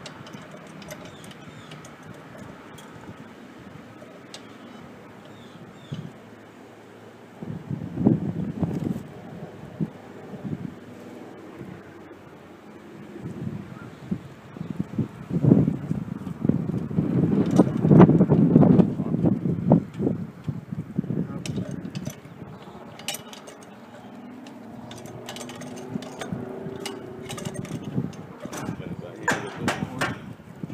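Pliers working the brass fittings of a sprinkler backflow preventer as it is unscrewed and taken apart: scattered sharp metal clicks and scrapes, thickest in the last third. Two stretches of low rumbling come in the middle.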